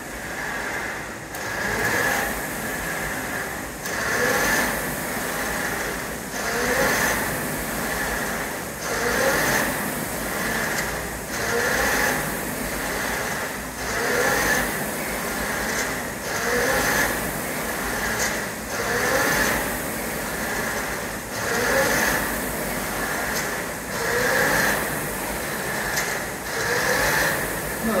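Concept2 Dynamic rowing machine's air flywheel whirring under steady rowing, surging with a rising whoosh on each drive stroke about every two and a half seconds, with a light knock at each stroke.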